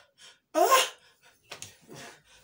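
A man's sudden sharp cry of pain, a short rising yelp about half a second in, as he writhes from a burning stomach ache. Fainter breathy sounds follow near the end.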